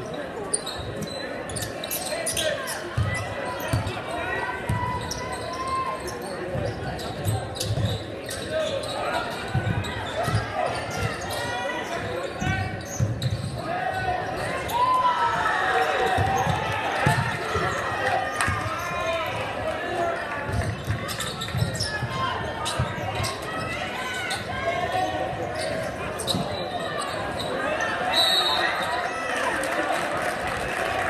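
Basketball being dribbled on a hardwood gym floor, a run of dull bounces, under the steady chatter and shouts of a crowd in a large echoing gym. The crowd grows louder about halfway through.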